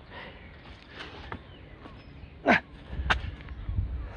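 Movement of a weighted-vest burpee, with a loud short call falling in pitch about two and a half seconds in and a sharp knock half a second later. A low rumble builds near the end.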